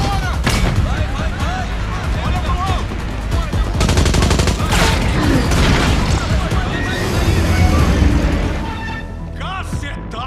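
Movie gunfight: automatic gunfire and bullet impacts over a music score, with a dense burst of rapid shots about four seconds in.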